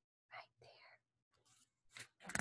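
Near silence: a faint breathy, whisper-like sound about a third of a second in, then a brief faint paper rustle near the end as a picture-book page starts to turn.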